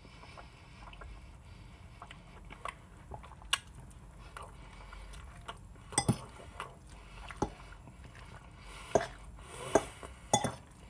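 Metal fork clinking and scraping against a plate while eating, with about half a dozen sharp clinks spread through, the loudest about six seconds in and near the end, and quiet chewing between.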